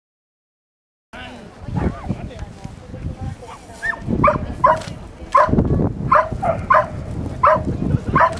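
A dog barking repeatedly in short, sharp barks, about two a second, starting about four seconds in, over background chatter of people.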